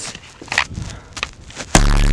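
A metal baseball bat smashing a soda can on the snow: one very loud hit near the end, overloading the recording, after a few light steps in the snow.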